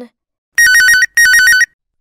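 Mobile phone ringing loudly: two half-second bursts of a fast two-tone warble, like a classic telephone ring.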